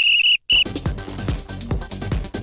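Sports-segment music sting: a high, held whistle tone cuts off about half a second in, then a fast run of percussive clicks and hits with low, falling drum booms.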